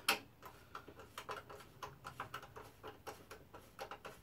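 A quick, uneven series of light clicks from a hand screwdriver driving screws into a wooden mounting plate on a metal robot chassis.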